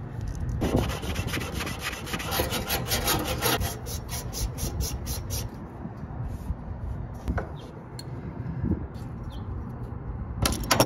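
Rapid rhythmic scraping, about seven strokes a second, from hands working a connector onto the spliced low-voltage control wires of an air-conditioning condenser. It stops about five and a half seconds in, giving way to a few scattered clicks and handling knocks.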